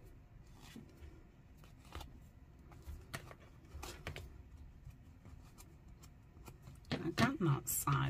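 Faint rustling and scratching of fabric being handled and threads pulled from its frayed edge. About seven seconds in, a woman's voice murmurs briefly, with a sharp click or two near the end.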